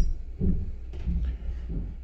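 Dull low thumps and rumble of handling noise as hands move steel air hammer chisel bits close to the microphone.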